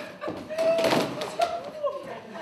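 A woman's long, held wailing cry that wavers and trails off, with a soft thud as she throws herself down onto a sofa.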